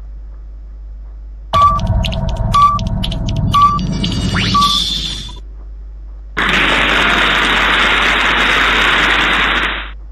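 Quiz-game sound effects: a countdown of four short beeps about a second apart over a busy backing, ending in a rising whistle, then, after a short gap, a steady band of noise lasting about three and a half seconds that fades out just before the end.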